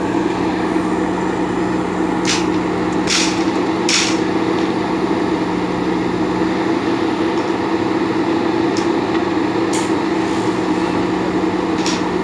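JCB backhoe loader's diesel engine running steadily under working load, with about six sharp metallic clinks scattered through it.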